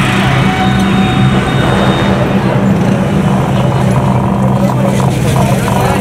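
Loud, steady din of a busy city street: motorbike and car traffic mixed with the voices of a crowd.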